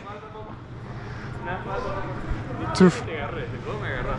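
Men's voices calling out during play, several at once and mostly distant, with one short shout of "two" near the end, over a steady low hum.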